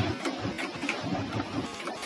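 Typing on a computer keyboard: a quick run of uneven key clicks as a short word is entered.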